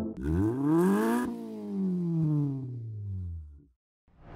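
A car engine revs up sharply for about a second, then winds down slowly and fades out near the end.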